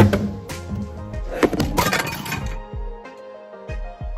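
Background music over the clatter and clinks of things knocked over by accident, with a burst of clattering about a second and a half in.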